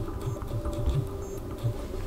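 Soft irregular taps of a fingertip typing on a smartphone's on-screen keyboard, over quiet background music with sustained tones.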